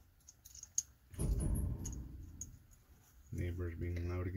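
Small clicks and handling rubs of a metal and plastic Arca-Swiss style camera clamp being turned over and fitted by hand. Near the end a man's voice comes in.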